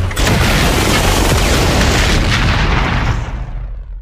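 A loud, sustained, boom-like rush of noise with a heavy low end, dying away over the last second.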